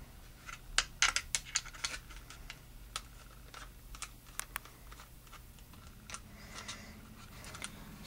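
Screwdriver backing out the belt-clip screws on a Kydex holster: irregular light clicks and ticks of the bit, screws and hard plastic, most closely spaced about one to two seconds in and sparser after.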